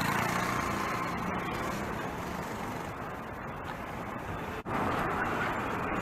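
City street traffic: a steady hum of passing motor vehicles, with a motorcycle engine close by at the start that fades away over the first couple of seconds. The sound drops out for a moment about two-thirds of the way through.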